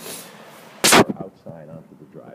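An exterior door being pushed open, with one sharp, loud bang about a second in.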